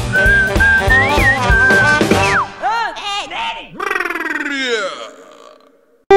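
Cartoon soundtrack: a bouncy swing tune with a whistled melody. About two and a half seconds in it gives way to a string of springy, rising-and-falling cartoon sound effects, then a long falling glide that fades out near the end.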